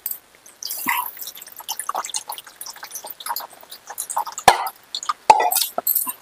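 Dry fish curry boiling in a metal pan, its bubbles popping and plopping irregularly. A sharper knock comes about four and a half seconds in.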